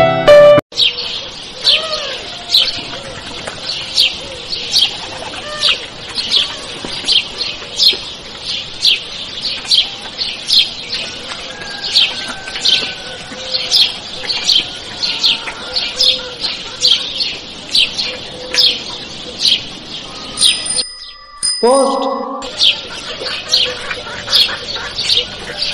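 A songbird repeating a sharp, high, downward-slurred chirp over and over at a steady pace, a little more than once a second. Near the end the calling breaks off for a moment while a short, lower call is heard, then the chirping resumes.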